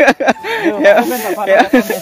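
People talking loudly, with a brief high hiss about a second in.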